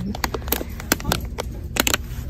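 Clear plastic candy bag of Caramel Creams crinkling and clicking under long fingernails as it is handled, a run of sharp, brief crackles.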